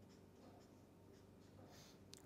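Faint strokes of a felt-tip marker writing on paper: a few short scratches, with a slightly louder one near the end, over near silence.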